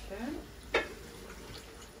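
Quiet handling of food being mixed by hand in a glass bowl, with one sharp knock about three-quarters of a second in and a brief vocal sound at the start.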